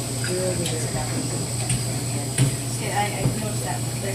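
Low background talk from several people in a room, over a steady low hum, with one sharp click about two and a half seconds in.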